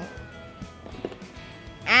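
A thin, whistle-like tone gliding slowly downward and fading out about a second in, over faint room noise.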